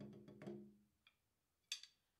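Drumsticks playing quick, even strokes on a practice pad over a steady low ring, stopping about a second in. A faint click follows, then a sharper click near the end.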